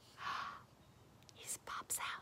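A woman whispering: two short breathy whispers, one near the start and one near the end.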